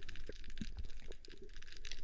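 Quiet, irregular small clicks and crackles heard underwater.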